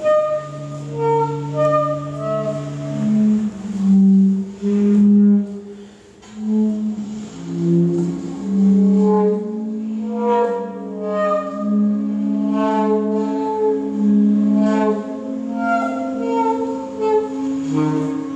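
Tenor and alto saxophones improvising together in free jazz: long held notes, often one low line sounding under a higher one, with a brief lull about six seconds in.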